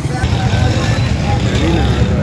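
Busy street noise: a loud, steady low rumble with people's voices talking in the background.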